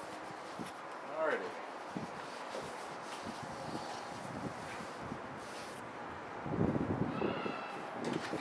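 Sheets of printed photo paper being handled and shuffled over a cardboard box, with wind on the microphone. A louder gust-like rumble comes near the end.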